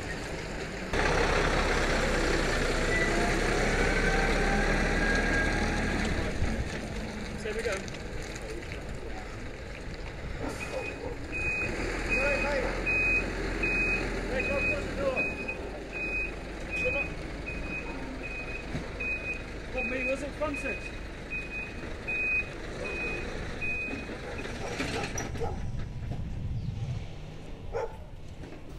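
Scania 94D lorry's diesel engine running and revving as it manoeuvres, then its reversing alarm beeping steadily, about one and a half beeps a second for some thirteen seconds as it backs up. A short hiss near the end.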